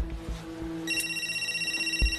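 Cordless phone's electronic ring: one warbling multi-tone ring starts about a second in and stops just as it ends. A low thud comes at the very start.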